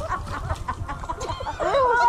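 People laughing in short, choppy bursts, with louder laughter rising and falling in pitch near the end.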